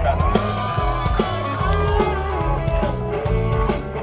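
Live rock band playing an instrumental vamp: an electric guitar holds a long note over bass guitar and drums.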